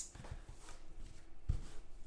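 Trading cards being handled and shuffled by hand, a soft faint rustle, with a short low thump about a second and a half in.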